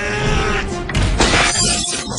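Glass shattering about a second in, a sharp crash over background music: the cockpit window of a mech suit breaking.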